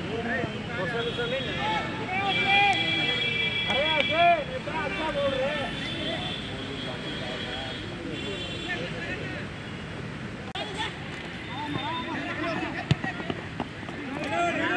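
Men's voices shouting and calling across a football pitch during play. A steady high tone sounds for about two seconds a couple of seconds in.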